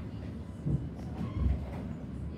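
An Alstom Citadis X05 light-rail tram running, heard from inside the passenger cabin: a steady low rumble with two heavier low thumps, under a second apart, in the middle.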